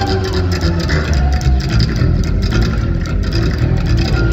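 Upright double bass played solo, slap style: a run of deep notes with percussive clicks of the strings snapping against the fingerboard.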